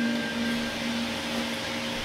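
The last note of an electric guitar dies away during the first second, over a steady hiss and hum from the guitar amplifier.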